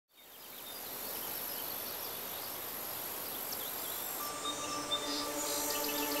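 Nature ambience fading in, with a steady high insect buzz and scattered bird chirps. About four seconds in, held music notes in several pitches come in over it.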